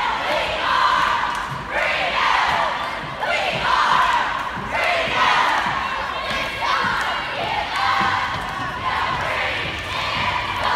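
Cheerleading squad shouting a cheer in unison, one short shouted phrase about every second.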